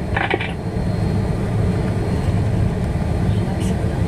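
Steady low rumble inside the cabin of an Airbus A330 taxiing after landing.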